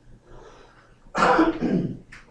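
A man clearing his throat, a loud two-part rasp starting about a second in.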